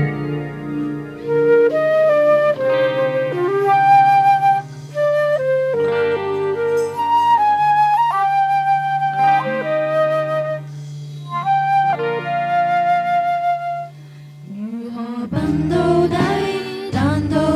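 Concert flute playing a slow melody of long held notes over sustained low chords. Near the end, voices come in singing.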